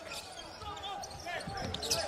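Basketball game sound on an indoor hardwood court: a ball dribbled a few times, mostly in the second second, over a quiet arena murmur.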